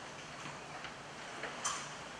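Quiet room tone with a few faint clicks, and one slightly louder, short click near the end.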